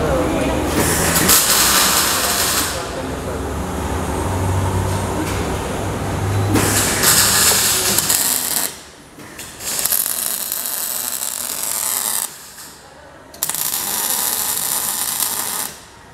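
MIG welding arc crackling and hissing on a steel-tube motorcycle frame, in runs of a couple of seconds each. It stops briefly twice in the second half as the welder pauses between beads.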